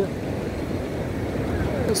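Steady low rush of wind on the microphone over the background wash of surf, with no distinct event.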